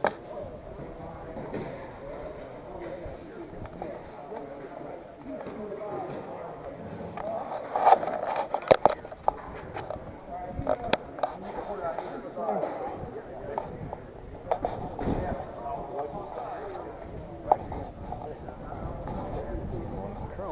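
Indistinct voices of people talking, with scattered knocks and rubbing as the handheld camera is moved and handled; the loudest knocks come about eight to nine seconds in.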